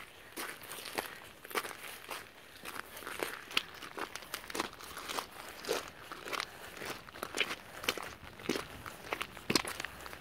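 Footsteps crunching on a beach of shingle and broken shells, a steady walking pace of about two steps a second.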